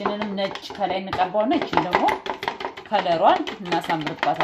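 A spoon stirring jam in a small glass bowl, clicking and scraping against the glass in quick, irregular taps.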